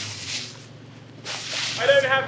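Footsteps swishing through grass and leaf litter: a brief rustle at the start, then a louder, longer one about a second and a half in, with a voice starting at the very end.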